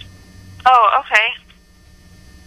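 A short two-part utterance from a voice heard through a telephone line, a little past halfway through. Otherwise only a faint line hum.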